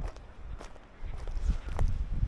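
Footsteps on dry wood chips and gravel, a few separate steps, over a low rumble.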